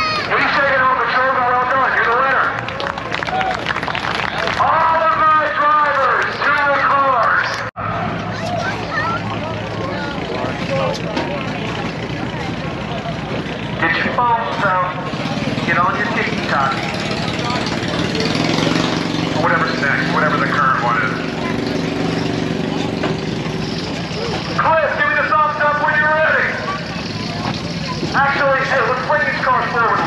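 Grandstand crowd chatter over the engines of cars waiting at the start line, the steady engine sound growing louder through the middle of the stretch. The sound cuts out for a split second about eight seconds in.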